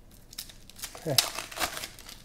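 Foil wrappers of Panini Prizm football card packs crinkling and tearing as the packs are ripped open by hand, with quick irregular crackles.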